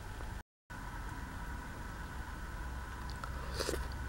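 Mostly steady faint hiss and hum of the recording, with a short dropout about half a second in; near the end a few faint clicks as a spoonful of semolina porridge is brought to the mouth.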